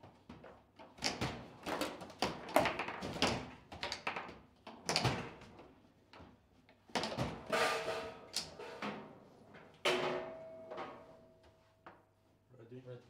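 Table football in play: rapid sharp knocks and clacks of the ball struck by the plastic players and rods banging against the table, in bursts with short pauses. The run of play ends in a goal.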